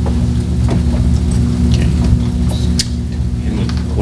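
Steady low electrical hum from the room's microphone and sound system: a stack of constant low tones with no speech over it. A few faint ticks and rustles come through.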